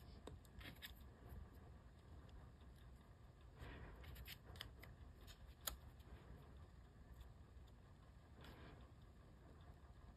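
Near silence, with faint soft rustles and light taps of small paper letter pieces being nudged and pressed onto a card, the sharpest a single tick a little past the middle.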